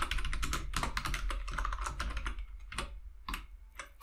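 Typing on a computer keyboard: a quick run of keystrokes that thins out to a few separate taps toward the end.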